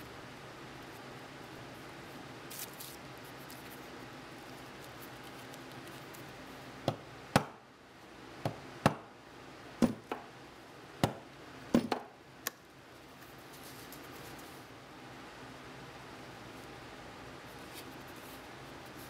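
Hand tools working leather on a bench: quiet handling, then about ten sharp clicks and taps over some five seconds midway.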